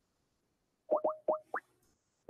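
Four quick rising plop sound effects, each a short upward sweep in pitch, a fifth of a second or so apart, starting about a second in after near silence.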